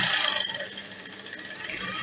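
Industrial sewing machine running as it stitches through layers of fabric, louder at first and easing off after about a second.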